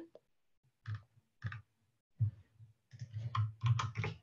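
Keystrokes on a computer keyboard: a few single taps spaced out, then a quicker run of key presses near the end, as a command is entered in a terminal.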